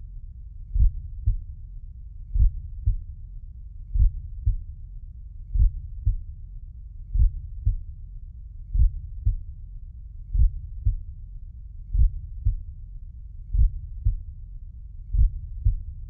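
Slow heartbeat sound effect: a low double thump, lub-dub, about once every second and a half, over a steady low rumble.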